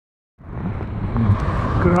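Steady low rumbling noise from a bicycle moving along an asphalt path, mixed with wind on the microphone and cars passing on the road alongside. It starts abruptly about half a second in.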